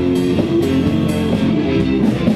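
Live band playing guitar and drum kit with a steady beat.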